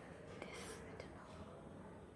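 Quiet room tone with faint whispering or breath from a person, and two soft clicks about half a second apart.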